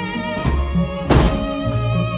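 Background music of sustained bowed strings, cello and violin, with one loud thunk about a second in: a tall wooden casement window being pushed shut and latched.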